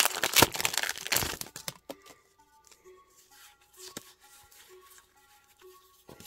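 Foil Pokémon booster pack wrapper being torn open and crinkled, a loud crackling rustle that stops about two seconds in, followed by faint soft handling of the cards.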